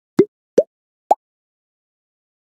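Three short, bubbly pop sound effects from an animated logo intro, each a quick upward bloop. Each pop is pitched higher than the one before, all within the first second and a bit.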